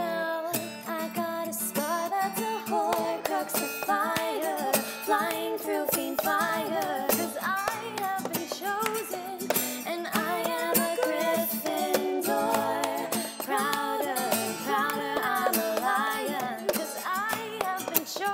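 Layered female vocals singing a pop chorus over a strummed acoustic guitar, with the sharp slaps and taps of a plastic cup beaten on a tabletop in the cup-game rhythm.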